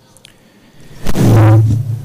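Public-address loudspeakers come up loud about a second in with a steady low hum, just after the sound system's volume has been turned up.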